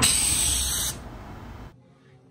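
A loud burst of hissing noise that lasts about a second, weakens, then cuts off abruptly to near quiet shortly before the end.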